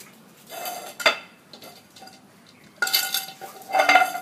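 An Alaskan malamute puppy pushing and knocking its dog bowl across a tiled floor: the bowl clatters and scrapes, with a sharp knock about a second in and two louder rattles near the end that ring briefly.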